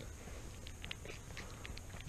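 Lamb sucking at a feeding bottle's teat: faint, irregular little clicks and smacks, with low handling rumble underneath.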